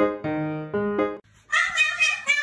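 Light piano music with a bouncing run of short notes stops a little over a second in; after a brief pause a cat starts meowing, calling for its owner.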